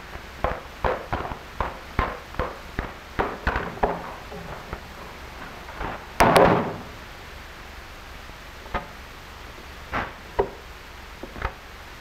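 Quick footsteps, about two or three a second, for the first four seconds. About six seconds in a door bangs, and a few scattered knocks follow.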